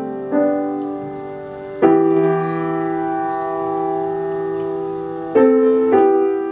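Grand piano playing slow chordal accompaniment to a psalm with no voice: a chord about a third of a second in, a long held chord struck at about two seconds, and a new chord near the end.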